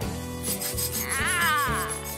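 Cartoon sound effect of a hairbrush scrubbing teeth: a steady rubbing rasp. A tone glides up and falls back about a second in, over background music.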